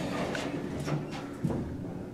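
Dover elevator car doors sliding shut: a steady low hum from the door motor with a couple of light clicks.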